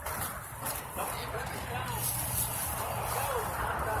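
Faint voices of people talking at a distance, over the noise of an outdoor market and a low steady hum.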